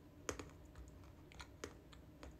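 Several faint, sharp clicks at irregular intervals, the loudest a little after the start and again past the middle, over a low steady room hum.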